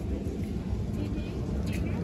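Outdoor background ambience: a steady low rumble, as from wind on a phone microphone, with faint indistinct voices.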